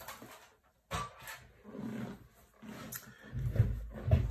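Handling noises as a Big Shot die-cutting machine is lifted off the work table and set aside: a sharp click about a second in, then low rumbling thuds near the end.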